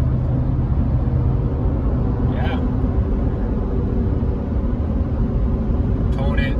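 Steady engine drone and road noise inside the cab of a Ford F-250 pickup with the 7.3 L gas V8, cruising at about 65 mph in tenth gear while towing roughly 11,500 lb.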